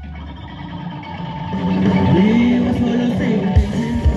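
Live rock band: a quieter, held passage of electric guitars swells up from about a second and a half in, with a note sliding up in pitch, and the drum kit comes back in with hard hits near the end.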